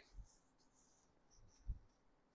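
Faint rustling of silk saree fabric being gathered and bunched in the hands, with a soft low bump about three-quarters of the way through.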